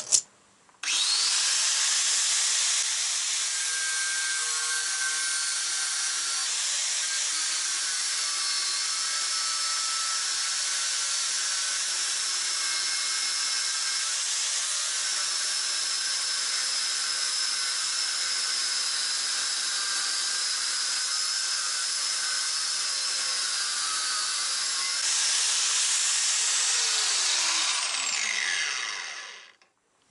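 Angle grinder running under load as it cuts excess metal off a Ural motorcycle cylinder. It starts about a second in, runs steadily, and is switched off near the end, its pitch falling as it winds down.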